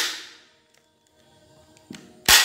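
Loud sharp crack from a converted Glock 26 toy pistol's action at the start, ringing away over about half a second, then a small click near the end.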